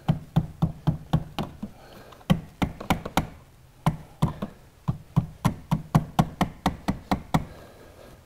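Positive cable terminal clamp being tapped down onto a car battery post with a non-metallic tool: about 25 quick knocks, about four a second, with two short breaks, stopping near the end. The clamp is being seated fully down on the post so it does not sit up.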